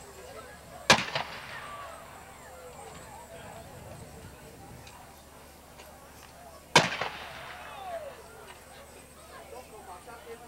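Ceremonial gun salute fired by a firing detail: two loud gunshots about six seconds apart, each followed by an echo and a ringing tail.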